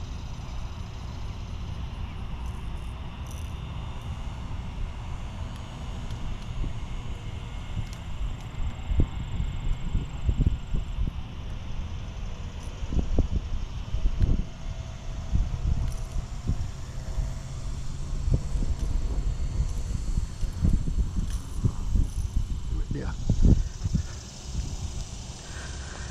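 Wind buffeting an outdoor microphone: a low, uneven rumble that swells into stronger gusts through the second half.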